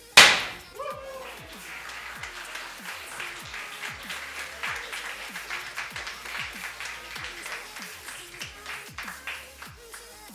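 A confetti cannon goes off with one loud pop right at the start, followed by several seconds of audience clapping and cheering over electronic background music with repeated falling bass slides.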